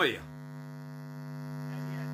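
A steady, even-pitched hum with many overtones, getting slightly louder.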